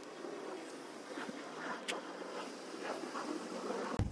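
Faint rustling of a stretchy fabric sun-protection arm sleeve being pulled up the arm and smoothed down, with a single small click about two seconds in.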